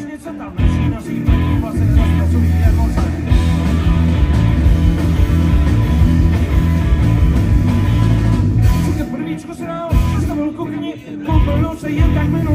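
Live rock band playing a fast, punchy song through the PA, heard from the audience: electric guitars, bass guitar and drums. The bass and drums drop out briefly about nine seconds in and again near eleven seconds.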